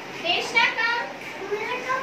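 Young children's high voices chattering and talking.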